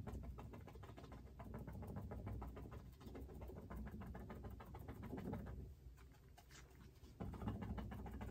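Paintbrush dabbing acrylic paint onto a stretched canvas in quick, repeated short taps, several a second, with a brief pause about six seconds in before the dabbing resumes.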